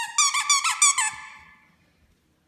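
Squeaky plush toy squeezed rapidly: a quick run of about five sharp squeaks within a second, the last one trailing off.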